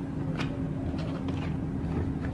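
A steady low background hum, with a few faint clicks scattered through it.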